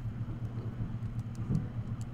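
A steady low hum in the background.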